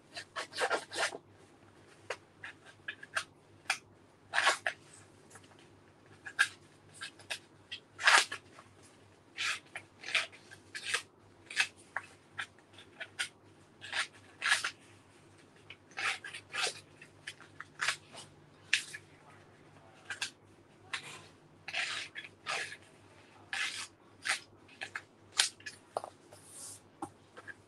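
Handheld paper-edge distresser scraping along the edge of patterned paper in short, irregular scratchy strokes, roughening the edge to a worn, frayed look.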